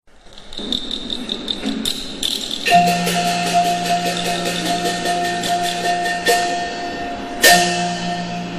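Teochew opera instrumental ensemble starting up: rapid wooden and drum strikes, with long held notes joining about three seconds in. A loud struck accent comes near the end.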